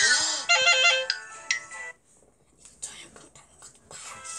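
A short electronic chime jingle, a quick run of bright notes like a ringtone followed by a couple of single tones, from a tablet story app as its page turns, right after a brief voice sound. A near-silent gap and a few soft clicks follow.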